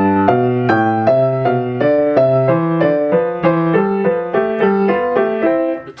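Grand piano played with both hands mirroring each other: a steady run of notes, about three a second, working through a repeated four-note fingering sequence. The playing stops just before the end.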